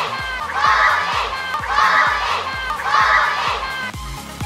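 A group of children shouting together in a chant, "Stormy, Stormy", one shout about every second, over background music with a steady beat.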